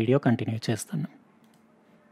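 A man speaking for about the first second, then near silence: faint room tone that cuts off suddenly near the end.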